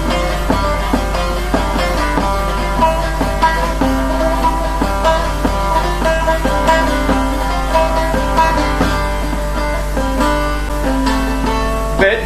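Bağlama (Turkish long-necked lute) played solo: a fast plucked melody of many quick notes, over a steady low hum.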